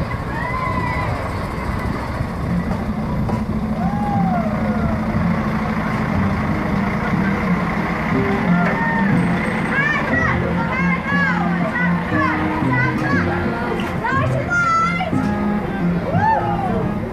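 A Mercedes-Benz Axor lorry's diesel engine rumbles as it slowly hauls a carnival float past, under music with held, stepping notes. Children's and crowd voices call out over the top, more often in the second half.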